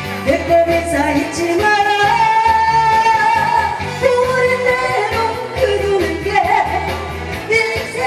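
A woman singing a Korean trot song live into a microphone over a backing accompaniment with a steady beat. She holds long notes from about two to five seconds in.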